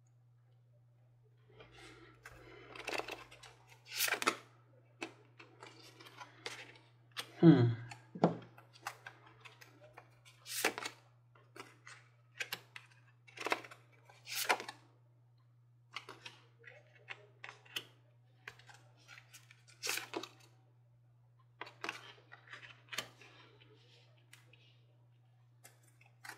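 Tarot cards being shuffled and laid out by hand: irregular crisp snaps and swishes, with a louder thump about seven and a half seconds in.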